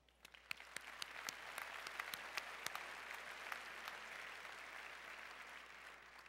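Audience applauding: a crowd of hand claps that builds over the first second, holds steady, and fades out near the end.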